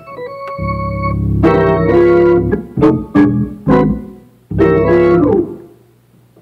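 Organ playing gospel-style "preacher chords": a held chord joined by a deep bass, then a run of full chords struck one after another, the last fading out shortly before the end.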